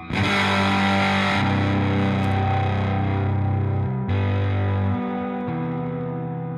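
Collings 290 electric guitar with ThroBak P90 pickups, played through a Milkman Creamer 20W combo with overdrive from a ThroBak Overdrive Boost: a loud distorted chord struck at the start and left to ring, then a second chord struck about four seconds in.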